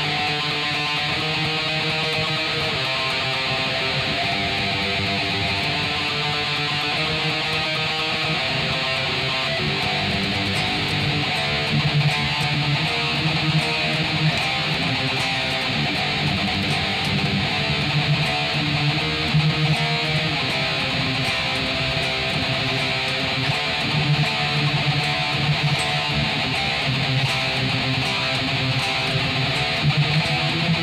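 A custom Kiiras F-form electric guitar is played through an amp with delay switched on, in a continuous picked and strummed riff. Louder accents come in from about twelve seconds on.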